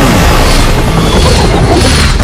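Explosion sound effect: a loud, continuous blast and rumble with no letup.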